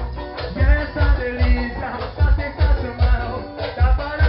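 Live band dance music over a loud sound system, driven by a heavy, steady bass beat about twice a second with melodic lines above it.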